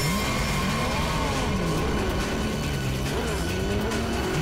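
Background music mixed with sport motorcycle engines revving, their pitch rising and falling several times as the bikes pull away.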